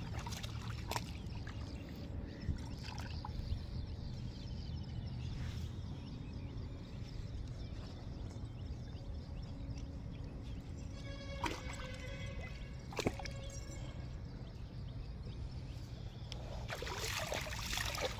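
Shallow river water sloshing and trickling around a wading dog's legs, with a few light knocks. The splashing gets louder near the end. A brief pitched tone sounds about eleven seconds in.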